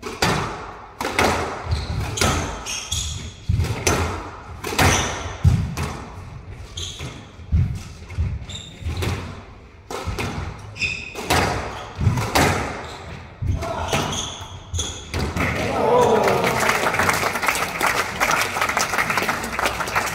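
A squash rally: rackets striking the ball and the ball smacking the walls and glass in quick irregular succession, echoing in the enclosed court, with short high squeaks from shoes on the wooden floor. About sixteen seconds in the rally ends and the spectators break into applause and cheering.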